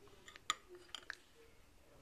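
A metal spoon clinking lightly against a ceramic bowl as it is worked through soft frozen fruit: one sharper clink about half a second in, then a couple of fainter ticks about a second in.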